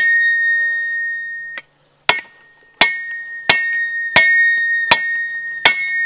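Cold Steel Special Forces shovel's steel blade chopping into dry, seasoned hardwood: one strike that rings on for about a second and a half, then six chops at a steady pace, a little faster than one a second. Each blow sets the steel ringing with a clear high tone; the steel really rings.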